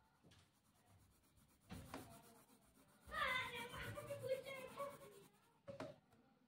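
Faint scratching of a 4B graphite pencil shading on paper. About three seconds in, a drawn-out high-pitched call in the background lasts about two seconds and is the loudest sound.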